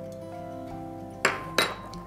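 Two sharp clinks, a small ceramic spoon striking a glass mixing bowl, a little past a second in and again a moment later. Acoustic guitar background music plays throughout.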